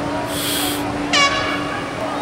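A horn holds one steady low note throughout, with a brief high-pitched call about a second in.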